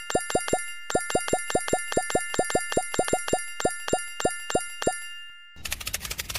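Cartoon 'plop' sound effects in quick succession, each a short pop falling in pitch, about five a second with a brief pause near the start, over a held high chiming tone, as watermelons pop up along the vines. About half a second before the end they give way to a dense rattling noise.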